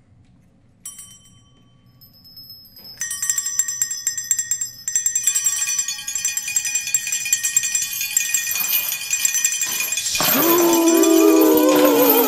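Small hand bells played as live sound effects ring in one by one: a faint bell about a second in, more from about three seconds, building into many bells jingling and clinking together. Near the end, wavering voices wail over the bells and are the loudest part.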